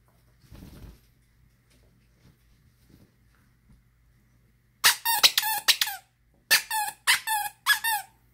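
A plush squeaky toy being bitten by a dog: two quick runs of sharp squeaks, about five each, starting about five seconds in, each squeak dropping in pitch as it ends.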